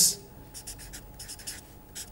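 Felt-tip marker writing on paper: a run of short, faint strokes as letters and a fraction bar are drawn.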